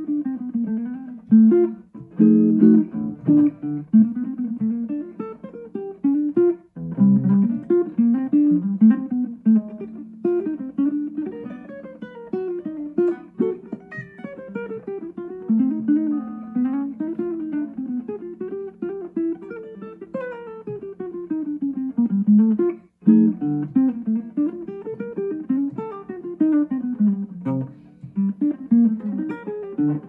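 Gibson L-5CES archtop electric guitar played clean through a Yamaha THR10II amp, running long single-note jazz lines that rise and fall, with a few chords mixed in near the start. The tone is clean and undistorted, the player's favourite clean setting.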